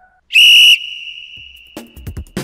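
One short, loud blast of a sports whistle, the start signal for the exercise, its tone trailing off faintly; music with a beat starts near the end.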